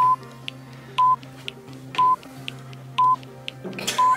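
Countdown timer beeping once a second, four short beeps at the same pitch, over background music with a light ticking beat.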